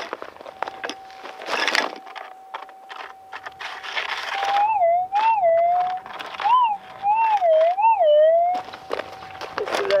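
Gold-prospecting metal detector sounding a steady threshold hum, which about halfway through turns into a warbling target tone that rises and falls several times as the coil is swept over the spot, then settles back to the steady hum: the detector is responding to a metal target in the ground. A couple of short gravelly scrapes of the scoop come in the first half.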